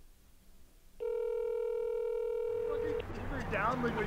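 Telephone ringback tone: one steady electronic tone that comes in about a second in and cuts off sharply two seconds later, as a call rings on the other end. Voices follow near the end.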